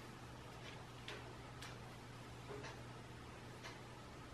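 Faint ticks, about one a second, over a low steady hum.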